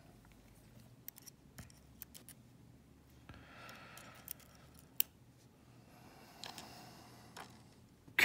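Faint, scattered small metal clicks and light scraping of tweezers working in the pin chambers of a Euro cylinder lock's housing as a driver pin is picked out, with one sharper click about five seconds in.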